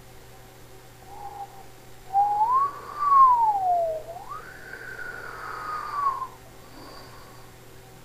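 A whistled tone gliding in pitch: a brief faint note about a second in, then from about two seconds in a tone that rises, sinks, leaps up higher and slides slowly down, stopping about six seconds in.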